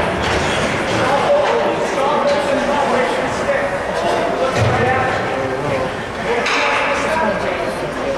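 Ice hockey game sounds: voices talking in the rink, with scattered clicks from sticks and puck and a dull thud about four and a half seconds in.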